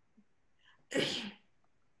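One short sneeze from a person, a sudden burst about a second in, with a faint intake just before it.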